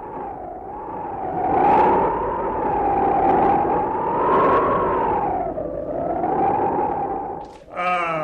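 Radio-play sound effect: a single whistling tone that slowly wavers up and down in pitch over a steady hiss. It swells about two seconds in and drops away near the end.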